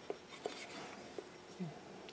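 A few faint clicks and light taps from a cast-iron Stanley bench plane being handled: the lever cap locked down over the retracted blade and the plane turned over on the bench.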